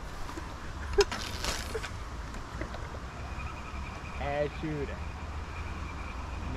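Wind buffeting the microphone in a steady low rumble. A single sharp click comes about a second in, followed by a brief rustle, and two short voice-like sounds follow a little past four seconds.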